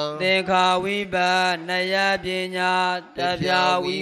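A male monk chanting Pali scripture in a melodic recitation tone, holding each note steadily, with short breaks between phrases.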